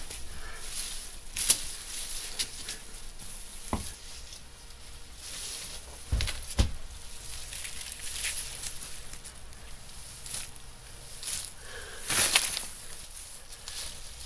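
Hands working loose compost soil around a transplanted celery plant: scratchy rustles of soil, straw and leaves, with a few soft thumps as the soil is pressed down.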